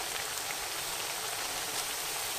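Potato patties shallow-frying in hot oil in a pan: a steady sizzle.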